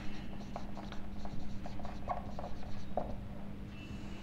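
Dry-erase marker writing on a whiteboard: short, irregular squeaks and scratches of the felt tip against the board.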